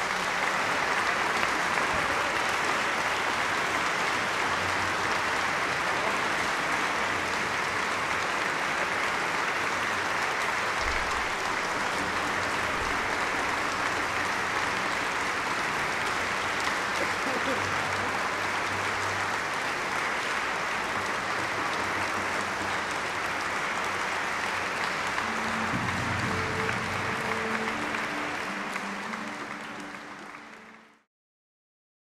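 Audience applauding steadily at the close of an orchestral concert performance, dying away near the end.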